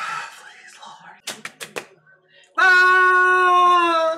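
Breathy laughter, then four quick sharp claps, followed by a long, loud, steady high-pitched held voice note lasting over a second near the end.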